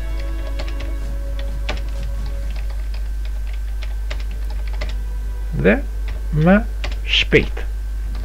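Computer keyboard typing: scattered faint key clicks over a steady low hum. Near the end there are a few short, louder vocal sounds.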